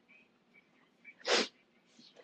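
A single short, sharp burst of breath from a person, a little over a second in, against faint room noise.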